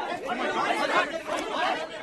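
Several men talking at once, a jumble of overlapping voices with no single clear speaker.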